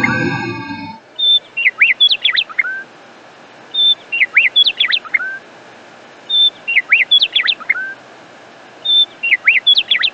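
A bird singing the same short phrase of quick whistled swoops four times, about every two and a half seconds, over a steady hiss.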